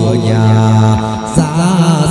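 Chầu văn ritual music: a low voice holds a long sung note, then moves up to a higher held note about halfway through, over instrumental accompaniment that includes the đàn nguyệt moon lute.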